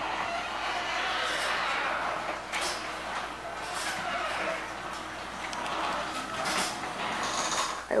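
HD520EV ceiling-mounted garage door opener running as it raises the sectional garage door. The motor and door give a steady mechanical noise with a few short clicks and rattles along the way.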